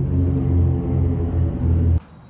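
A loud, steady low-pitched hum at a constant pitch that cuts off suddenly at the end.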